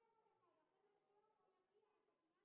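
Near silence, with only very faint voices.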